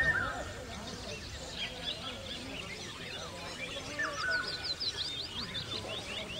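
Small birds chirping and singing in short repeated notes, with a quick run of high chirps about four seconds in, over faint distant voices.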